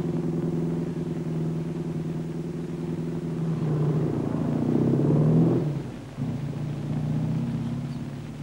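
Motorcycle engine running steadily, then revving up as the machine pulls away from the kerb, louder from about three and a half seconds in, and falling back sharply about six seconds in.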